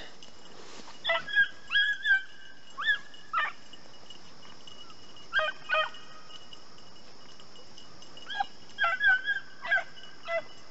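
Rabbit-hunting dogs barking while running a rabbit's trail: short, high barks in bunches of two to four with pauses between.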